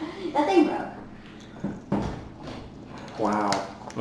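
Low, brief bits of talk, with a few sharp clicks or knocks about halfway through and again near the end.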